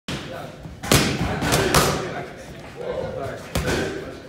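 Boxing gloves punching focus mitts held by a trainer: four sharp slaps. The first comes about a second in, two more follow close together, and one comes near the end.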